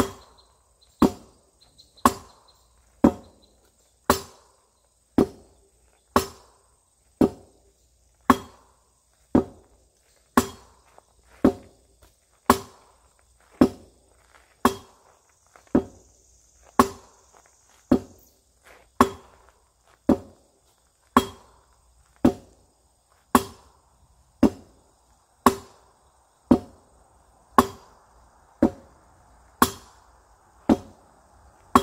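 Steel arming sword striking a pell of stacked rubber tyres in a steady run of sharp blows, about one a second, each with a short ring after it.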